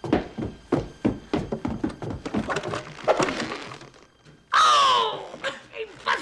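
Slapstick film soundtrack: a quick series of thuds and knocks for about four seconds, then a man's short, loud yell as a burglar is struck by a swinging paint can.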